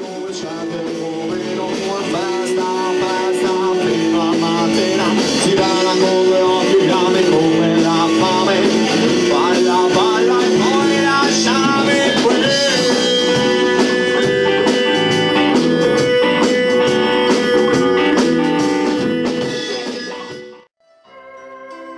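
A rock band playing live, with guitar prominent over keyboard, bass and drums. The music fades in at the start and fades out near the end.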